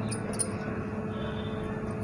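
Steady low hiss of a dosa cooking on a hot iron tawa over a gas burner, with a faint steady hum under it and a light tick about half a second in.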